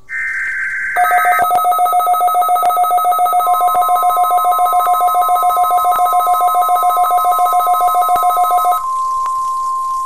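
Midland weather alert radio sounding its alarm: a loud, rapid two-tone beeping starts about a second in and cuts off suddenly near the end, set off by the NOAA Weather Radio SAME data burst for the Required Weekly Test. The burst is the short warble of digital tones heard at the very start. The station's steady single-pitch warning tone joins a few seconds in and holds after the beeping stops.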